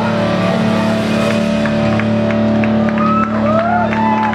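Electric guitars and amplifiers ringing out in a sustained, droning chord with feedback as a live rock song ends. Near the end, rising and falling whistle-like glides and scattered sharp claps join in.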